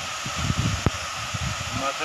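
Steady rush of a waterfall, with wind buffeting the microphone in irregular low rumbles and a single sharp click about a second in.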